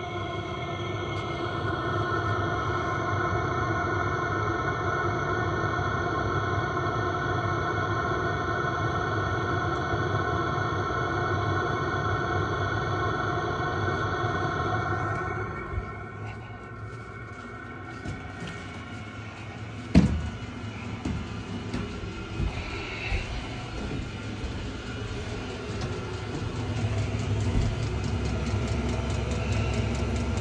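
A steady machine hum with a high whine of several even tones, which cuts out about halfway through. A single sharp knock follows, then a low rumble with a few light knocks.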